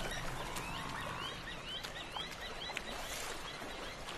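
Outdoor wildlife ambience: many short, quick chirps from birds, rising and falling in pitch, over a steady low background noise. There is a faint steady tone in the first second.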